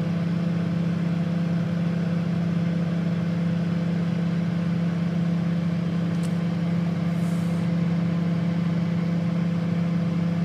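Microwave oven running with a steady low hum.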